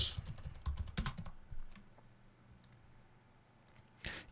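Computer keyboard keystrokes and clicks: a quick run of taps in the first second or two, then a couple of faint single clicks.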